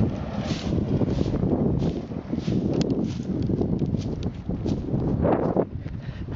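A twig broom swishing in repeated strokes as it beats out burning dry grass, under a steady rumble of wind on the microphone.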